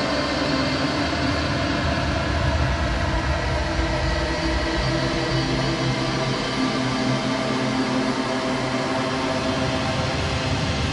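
A steady, dense drone of many sustained tones over a low rumble, holding an even level throughout.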